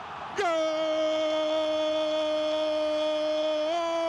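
A football commentator's drawn-out goal cry, "goool", held on one long note. One breath falls away at the start; after a brief pause a second held note begins about half a second in, stays level and lifts slightly near the end.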